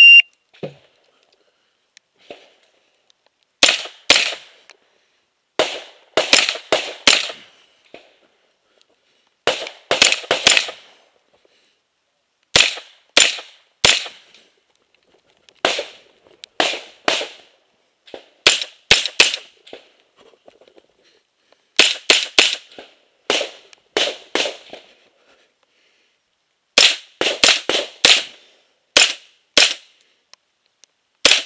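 A short shot-timer beep at the very start, then a carbine firing in quick pairs and short strings of shots, with gaps of a second or two between groups, across a practical shooting stage.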